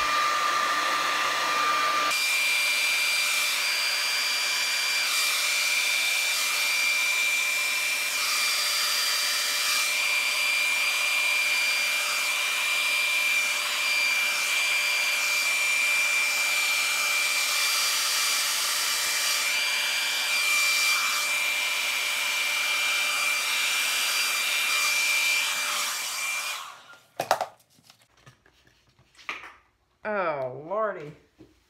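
Hand-held blow dryer running steadily with a thin high whine as it blows air across wet epoxy resin, switched off a few seconds before the end. A couple of light knocks follow.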